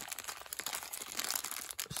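Small clear plastic zip-lock bag crinkling in the hands as it is handled and worked open, a run of irregular crackles.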